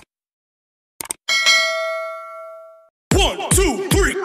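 Subscribe-button sound effects: a quick double mouse click, then a bright bell ding that rings out and fades over about a second and a half. About three seconds in, electronic dance music with a heavy beat of about four kicks a second starts.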